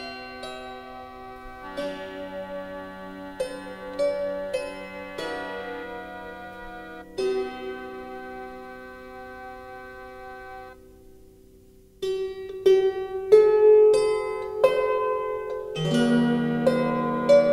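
Background music on a solo harp: slow single plucked notes left to ring and fade, with a short lull about eleven seconds in before louder playing resumes.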